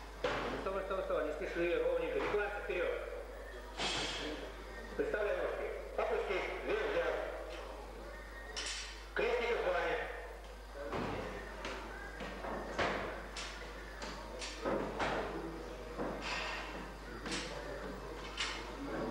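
Several thuds of a plate-loaded barbell being set down on a wooden gym floor during youth weightlifting lifts, over people talking in the background of a large hall.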